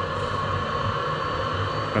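A Kenworth semi truck's engine heater running steadily, warming the engine's coolant before the truck is started. It gives a constant hum with a few held tones over an even hiss.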